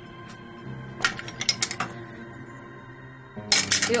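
A few light metallic clinks and clatters of kitchen metalware being handled at a counter, over soft, steady background music.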